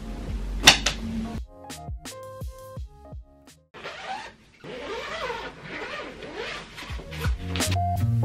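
Background music with sustained notes, dropping almost to silence briefly around the middle before picking up again.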